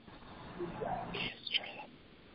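A person's voice, quiet and low, in brief muttered or whispered fragments over a conference-call line.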